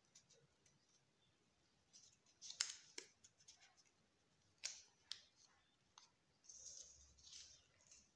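Lined paper cut-out being handled and unfolded by hand: faint crinkles and a few sharp little paper snaps about two and a half, three and five seconds in, with a soft rustle near the end.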